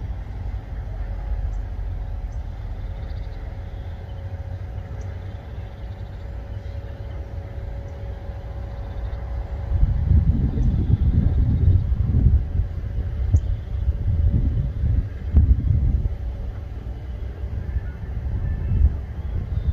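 Tipper semi-trailer truck's engine running with a low steady rumble and a steady whine from the hydraulic tipping gear as the body rises. From about ten seconds in, a louder, uneven low rumble as the load of sand slides out of the tipped body.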